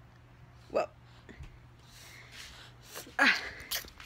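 A toddler's small vocal sounds in a quiet room: a brief voiced squeak about a second in, then a breathy "ah" near the end.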